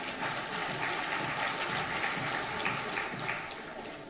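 A crowd applauding with scattered clapping, rising a little after the start and fading slightly near the end.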